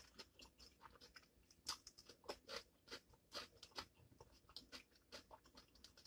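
Faint, close-up chewing and mouth sounds of someone eating ramen noodles: scattered short wet smacks and crunches a few times a second.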